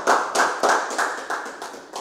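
Hands clapping in a quick, even rhythm, about three claps a second.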